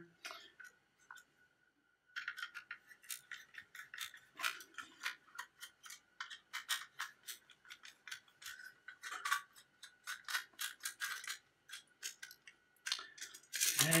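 Hand screwdriver turning small screws out of a thin sheet-metal hard-drive bracket: quick, irregular metallic clicks and scrapes that start about two seconds in and keep on until near the end.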